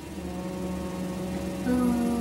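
Voices holding a steady, drawn-out rounded 'oo' sound: the onset of the word 'why' held long before the word is released in speech-therapy drilling. A second, slightly higher voice joins about one and a half seconds in.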